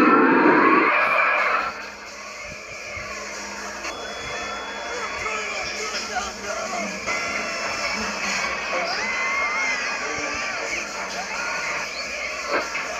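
Cartoon soundtrack: a loud cartoon voice yelling, cut off suddenly under two seconds in, then quieter music with voices.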